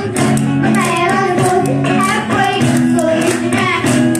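Live music: children singing together over strummed acoustic guitars, with hand percussion keeping a steady beat.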